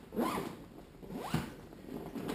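Zipper on a paintball gear bag's pocket being pulled in two quick strokes, one just after the start and one a little past a second in.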